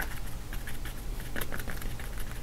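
Flat paintbrush tapping paint onto canvas: soft, irregular taps of the bristles against the canvas.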